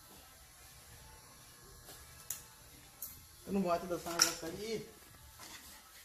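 Quiet barbershop room tone with two faint clicks, then a person's voice briefly past the middle.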